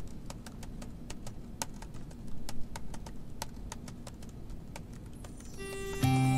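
Typing on a computer keyboard: irregular light key clicks, a few per second, over a low steady room hum. Music comes in just before the end.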